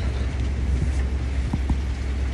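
Strong wind buffeting the phone's microphone, a steady low rumble, with a couple of faint taps about one and a half seconds in as the phone is handled.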